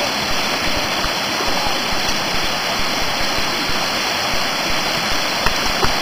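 Steady rush of a waterfall and the cascading stream below it, with a couple of faint knocks near the end.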